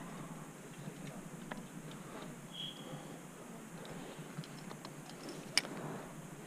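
Light scattered clicks and scrapes of a climber moving on rock: metal climbing gear (carabiners and quickdraws) knocking against the harness and rock, with one sharp click near the end.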